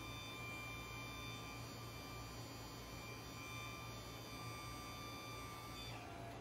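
Faint, steady electric motor hum with a thin whine from the battery-powered Drum-Hauler's clamp drive as its jaws close, stopping shortly before the end.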